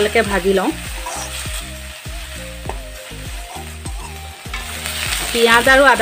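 Food frying in hot oil in a metal kadai, sizzling steadily, while a perforated steel spatula stirs it and scrapes and knocks against the pan. A singing voice in background music is heard at the start and comes back near the end.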